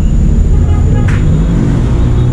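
Steady low rumble of nearby road traffic, with faint voices in the background.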